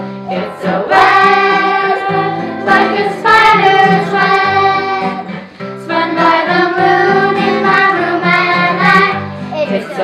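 A group of children and a woman singing together in long held notes, with a strummed acoustic guitar.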